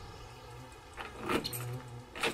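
Faint clicking and rattling of a door handle and lock being worked on a stuck door, starting about a second in.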